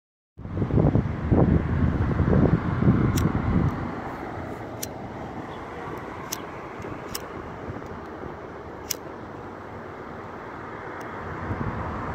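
A pocket lighter being flicked again and again, about seven sharp clicks at uneven gaps, as a cigarette is lit. A low rumble fills the first three or four seconds, over a steady outdoor street background.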